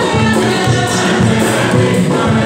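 Large mixed church choir singing a communion hymn, many voices together without a break.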